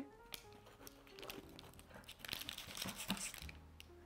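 Faint crunching and scraping of a knife cutting down through the baked crust of a deep-dish pizza, a few soft crackles that pick up in the second half, over quiet background music.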